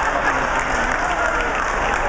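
Live audience applauding and laughing at a joke's punchline, steady throughout.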